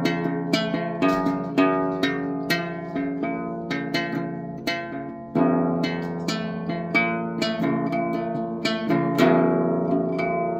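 Classical guitar played by hand: a run of plucked notes, two or three a second, ringing over held bass notes, with a louder chord about five seconds in and another near the end.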